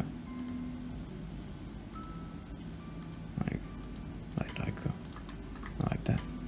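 Scattered computer mouse clicks over a steady low background hum while sliders in Blender's material panel are adjusted. A few brief murmured voice sounds come about three and a half and four and a half seconds in.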